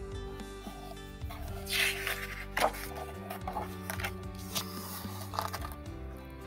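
Soft background music with steady held notes, and the rustle of a picture-book page being turned by hand in a few short bursts from about one and a half to five and a half seconds in.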